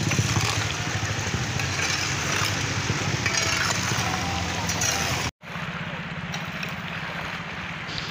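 Small motorcycle and car engines running as they pass slowly through flood water on the road, with a metal hoe scraping mud and gravel across the asphalt. The engine sound briefly cuts out about five seconds in and resumes.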